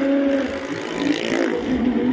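Small car engines running hard as the cars circle the vertical wooden wall of a well-of-death ride, a steady drone whose pitch wavers up and down.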